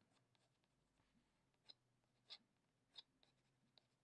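Faint scratching of a Caran d'Ache Luminance colored pencil on watercolor paper: about five brief strokes, starting about a second and a half in, as small texture marks are drawn.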